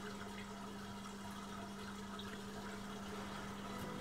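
Spring water trickling steadily into a stone-walled spring basin, faint, with a low steady hum underneath.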